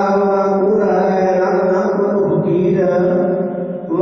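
Voices chanting a Sikh prayer in long held notes, the sound dipping briefly just before the end.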